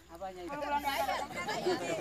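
Overlapping voices: several people chatting at once, with no single clear speaker.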